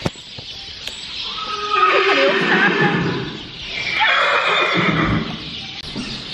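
A horse neighing twice in a stable, two long calls that waver and fall in pitch, the second starting about four seconds in.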